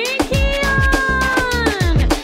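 Upbeat birthday song with a steady drum beat. A voice holds one long note that swoops up at the start and slides down near the end.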